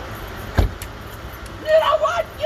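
A single sharp thump about half a second in, then a raised, high-pitched voice starting near the end.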